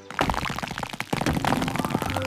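Cartoon sound effect of acorns raining down from a tree and clattering onto the ground: a fast, dense patter of small knocks.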